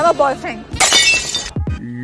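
A glass-shattering sound effect, a crash with ringing bits lasting under a second, about a second in.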